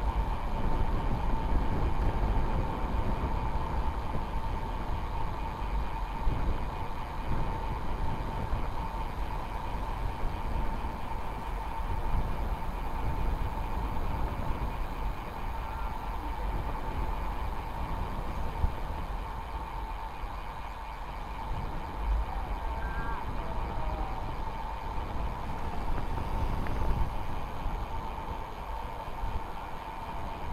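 Wind rushing over the microphone with tyre and road noise from a road bike rolling along asphalt, under a faint steady high whine.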